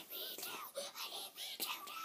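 A person whispering, with a few short, high, squeaky vocal sounds.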